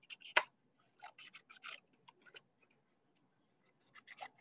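Scissors snipping paper: a scatter of short, faint snips, most of them bunched between one and two seconds in.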